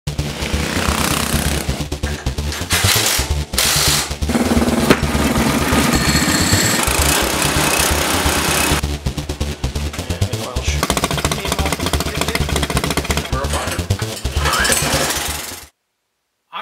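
Honda-clone single-cylinder four-stroke kart engine running fast, a loud rapid firing rattle, with the tachometer near 3,800 rpm. The sound comes in short clips that change abruptly several times and cuts off suddenly near the end.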